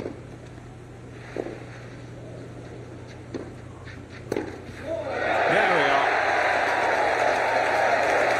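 Tennis rally on a clay court: several sharp racket-on-ball hits a second or two apart. About five seconds in, the crowd breaks into loud cheering and shouting that carries on.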